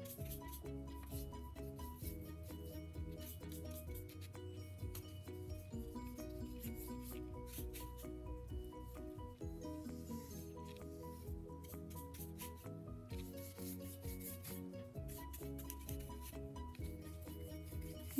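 Paintbrush rubbing and swishing on paper as paint is brushed on in side-to-side strokes and stirred on a paper plate, over soft background music with a stepping melody.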